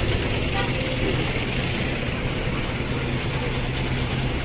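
A jeepney's diesel engine idling close by, a steady low hum under the general noise of street traffic.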